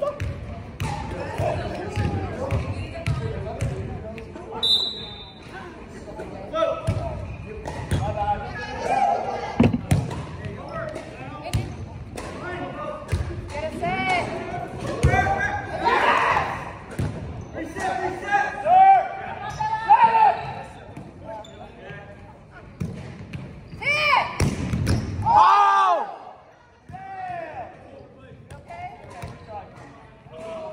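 Indoor volleyball rally: the ball is struck and hits the hardwood court in a run of sharp thuds, with players shouting and calling out, all echoing in a large gym hall.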